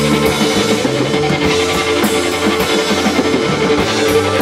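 Rock band playing live: distorted electric guitar chords and bass guitar over a driving drum kit with steady cymbal and drum hits, in an instrumental passage without vocals.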